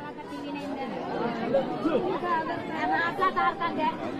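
Several people in a close crowd talking at once, their overlapping voices making an unbroken chatter.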